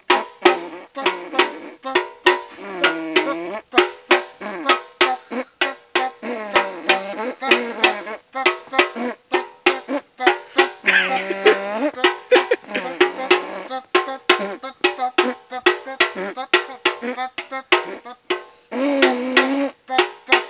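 Improvised mock banda music: men buzz brass-band lines with their mouths, one through a sombrero held like a horn bell and one through a small yellow horn, while a metal bucket is beaten with a stick in a steady quick beat.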